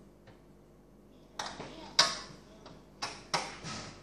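Four sharp metallic clicks and knocks from parts being handled at a steel PC case's expansion-slot brackets, the loudest about halfway through, each ringing briefly.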